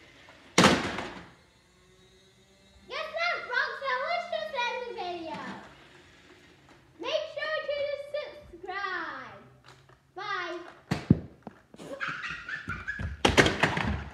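A sharp thunk about half a second in, then a child's wordless high-pitched vocalizing with gliding pitch, then several knocks and clattering handling noise on the camera near the end.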